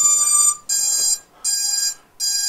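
Repeated high-pitched electronic beeping from the powered-up FPV drone on the bench, about half a second per beep with short gaps between. The beeping is loud enough that it is hard to talk over.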